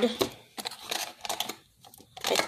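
A run of light, irregular plastic clicks and crinkles: a clear plastic blister pack and plastic scent pods being handled.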